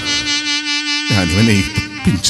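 A single reed-instrument note held steady and buzzing. About a second in, a man's singing voice with a wavering, vibrato-laden pitch joins over it.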